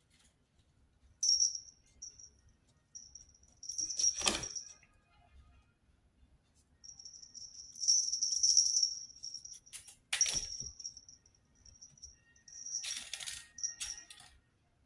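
A small bell on a kitten's collar jingling in bursts as two kittens play, with two thumps, about four and ten seconds in.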